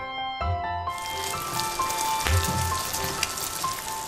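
Shredded fish mixture frying in oil in a nonstick pan: a steady sizzle that starts about a second in, under background music.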